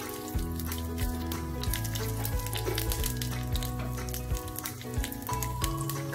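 Mustard seeds and dried red chillies crackling and sizzling in hot oil in a saucepan, with many small pops, over background music.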